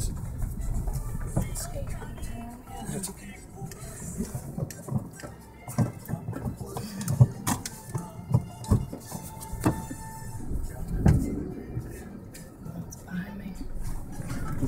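Car cabin noise while rolling slowly over an unpaved road: a low rumble with scattered short knocks and clicks.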